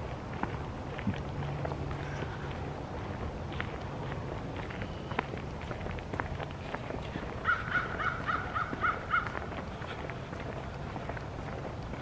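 Footsteps and faint rustle while walking outdoors, with a quick series of about seven short, evenly spaced animal calls a bit past halfway.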